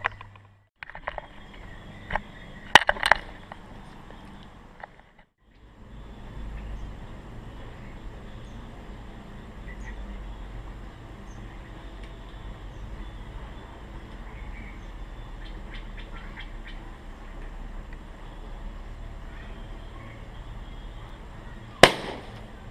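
Faint steady outdoor background with a few knocks and clicks of handling early on, then a single sharp, loud burst near the end as a water balloon bursts beside the sleeping cat.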